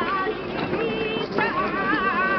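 A woman singing a saeta, the unaccompanied flamenco song of Holy Week, in long held notes with wavering, melismatic ornaments. She breaks off briefly about one and a half seconds in and comes straight back in.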